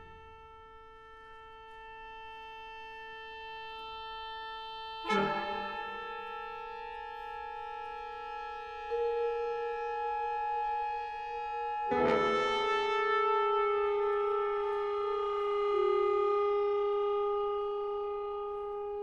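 Contemporary chamber ensemble holding long sustained wind notes that swell slowly from quiet. Fresh attacks come about five and twelve seconds in, with small steps in pitch between them.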